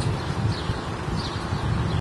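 Open-air ambience: a steady low rumble of wind on the microphone with a noisy hiss, and a couple of faint short bird chirps about half a second and a second in.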